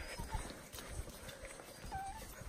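Quiet, irregular footsteps of a walker and leashed dogs on a gravel trail, soft crunches and thuds.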